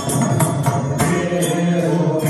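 Live Carnatic devotional bhajan: a male voice chanting held notes over a mridangam's steady strokes, with jingling percussion.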